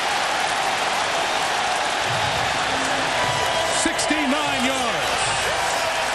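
Stadium crowd cheering a big completed pass, a steady roar with no let-up. A few voices stand out above it in the second half.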